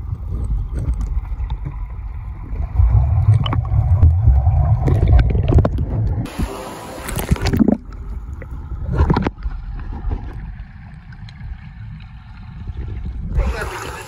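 Underwater sound from a camera held below the surface: a muffled low rumble of moving water, loudest in the middle, with scattered bubbling clicks. The camera breaks the surface briefly about six seconds in and again near the end, and the fuller splashing sound of open air returns.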